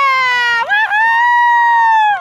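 A spectator's loud, high-pitched drawn-out cheering yell. It starts on one held note, breaks briefly, then jumps higher and holds until it drops off near the end.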